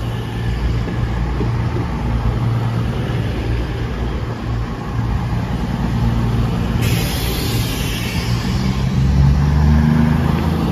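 Two coupled CrossCountry Voyager diesel multiple units, a Class 220 and a Class 221, pass slowly through a station. Their underfloor diesel engines give a steady low drone over the running noise of the wheels on the rails. A high hiss comes in suddenly about seven seconds in, and the low engine note grows louder near the end.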